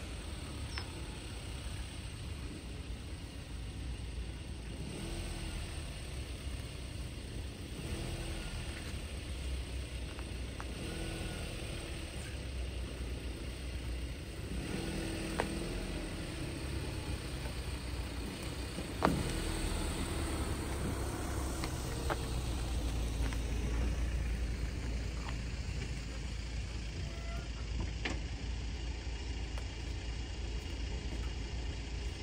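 Van engine running as it pulls a trailer loaded with a mini digger through a gateway, a low rumble that grows louder from about two-thirds of the way through as it comes close, with a single knock at that point.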